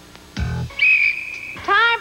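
A short dull thud, then a single whistle blast held steady for under a second, followed by a man starting to shout.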